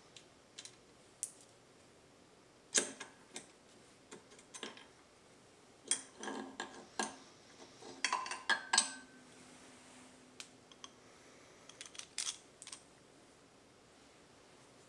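Small metallic clicks and clinks as a connecting rod and its bearing cap are worked off a motorcycle crankshaft's crankpin and set down. A cluster of sharper knocks comes about six to nine seconds in, one of them ringing briefly.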